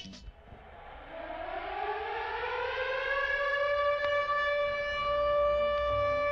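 A siren-like tone on the record: it starts low, glides upward over about two seconds, then holds one steady pitch with several overtones.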